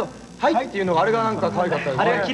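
Speech, with music in the background.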